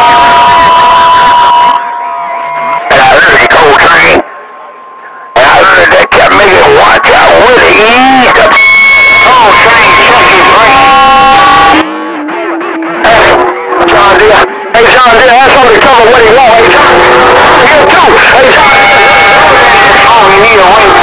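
CB radio chatter on channel 6 (27.025 MHz): loud, overdriven, garbled voices buried in static, with steady whistling tones from overlapping carriers. The signal drops out briefly a few times between transmissions.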